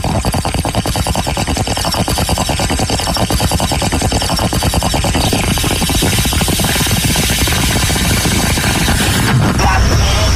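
Bong hit sound effect: water bubbling through the bong in a rapid, steady run of pulses, changing about nine seconds in.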